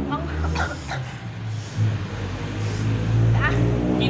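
Brief, faint voices over a low, rumbling hum that grows louder toward the end.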